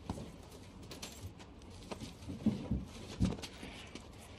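A few soft knocks and thumps, the loudest about two and a half and three and a quarter seconds in.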